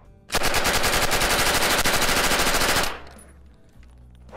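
PPS-43 submachine gun firing 7.62x25 rounds in one long full-automatic burst of about two and a half seconds, the shots coming in a fast, even stream that starts a moment in and stops cleanly.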